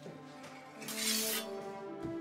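Film score with held notes, and about a second in a brief loud hissing swish of a sword blade.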